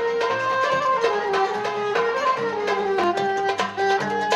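Live traditional Middle Eastern-style ensemble music: a soprano saxophone plays a melody of held notes that steps down and climbs back, over a plucked lute and sharp plucked or struck notes throughout.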